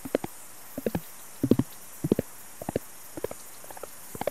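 Experimental electronic track built from field recordings: irregular clusters of short, low pitched pops, a few in quick succession about every half second, over a steady high hiss.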